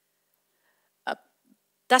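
A pause in a woman's talk, broken about a second in by one short voiced throat sound from her, then speech resumes just before the end.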